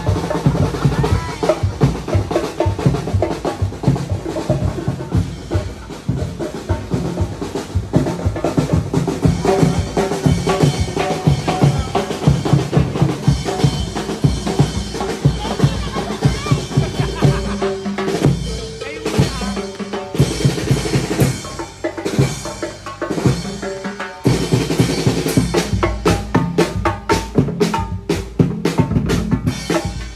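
Parade drums, bass and snare, playing a steady marching beat with some pitched music over it, dropping off briefly about two-thirds of the way through before the strikes pick up again.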